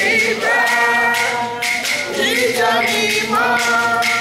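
A congregation singing together in chorus, a hymn in a steady rhythm, with percussion keeping a regular beat under the voices.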